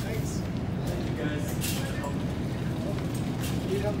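Supermarket background noise: a steady low hum with faint chatter from shoppers and a few light clicks or rattles.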